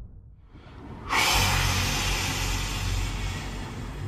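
A whoosh that swells in the first second and breaks into a loud, steady hiss with a low rumble under it: a transition sound effect.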